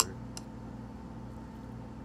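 Steady low background hum of the room, with one sharp click right at the start and a fainter tick about half a second in.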